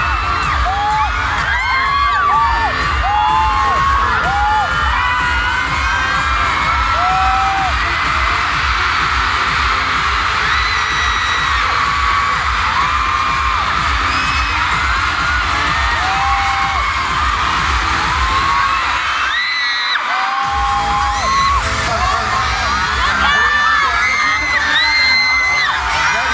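Pop music with a heavy, steady bass beat over a concert PA, with an arena crowd cheering and screaming along. The bass cuts out for about a second about two-thirds of the way through, then comes back.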